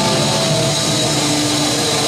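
Metal band playing live and loud: a dense wall of distorted electric guitars with held keyboard and guitar notes sustained over it, with no clear drum hits.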